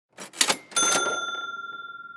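Intro sound effect: a quick rattle of two or three clicks, then a single bright bell ding that rings on and slowly fades.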